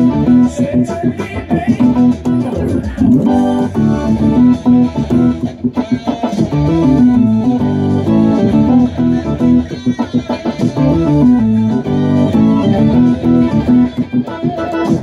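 Hard rock band music with electric guitar and bass, with a Hammond organ playing chords and runs along with it.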